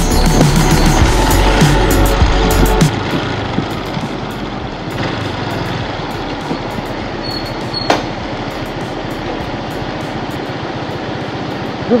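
Background music with a heavy bass line cuts off about three seconds in. A motorcycle running at low speed and then idling remains, with steady road and wind noise and one sharp click near the end.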